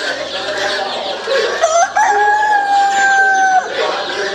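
A rooster crowing: a short rising note about one and a half seconds in, then one long held note that fades near the end, over the clucking of other caged chickens.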